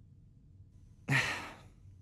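A young man's short sigh: one breathy, half-voiced 'uh' about a second in, fading away within about half a second.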